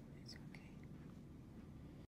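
Near silence: a low room hum with faint whispering in the first second.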